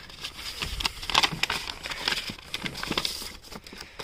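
Paper rustling and crackling as a greeting card is slid out of a paper envelope and handled, a run of small irregular crinkles.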